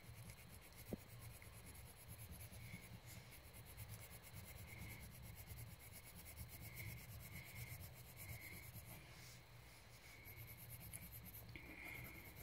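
Faint rubbing of colouring on paper in repeated strokes, as orange is blended into the drawing, with one small click about a second in.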